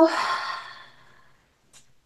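A woman's audible, breathy exhale that trails off the end of a drawn-out spoken "exhale" and fades away within about a second.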